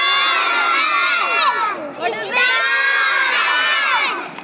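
A group of young children shouting together, in two long calls with a short break between them.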